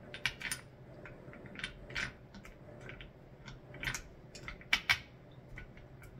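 Irregular light metallic clicks and clinks as hands handle the loosened center fastening and washer of a Takahashi TS telescope mount's clamshell. About a dozen taps come at uneven intervals, a few of them sharper, around two seconds in and near the five-second mark.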